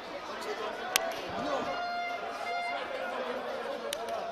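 Several people talking and calling over each other close by, with a sharp clap or slap about a second in and a weaker one near the end.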